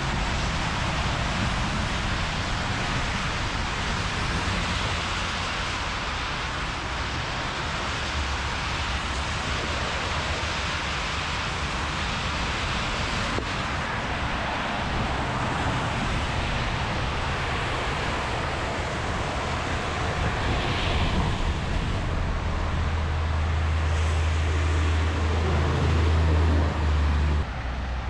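Freeway traffic on rain-soaked lanes: a steady hiss of tyres on wet road. A deeper rumble swells over the last few seconds and stops suddenly just before the end.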